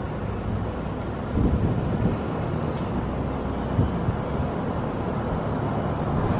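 Wind rushing and buffeting on the microphone through an open car window, over the low rumble of the car driving slowly. The gusts come and go, with a louder surge about a second and a half in.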